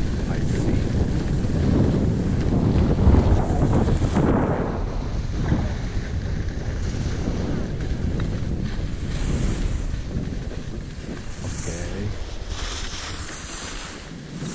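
Wind buffeting a GoPro's microphone as a ski bike slides down an icy slope, a dense rumble mixed with the hiss of the skis scraping over ice. The rumble eases after about ten seconds, and short hissy scrapes stand out near the end.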